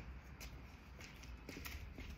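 A few soft footsteps on asphalt over a faint low outdoor rumble.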